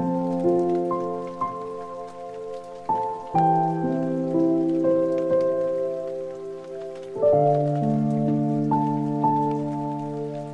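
Calm instrumental background music of slow, held keyboard chords that change about three and seven seconds in, with a rain sound mixed underneath.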